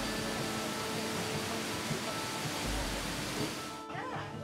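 Water churning and splashing in a fish lift's bucket, a steady rushing that cuts off suddenly just before the end, with background music underneath.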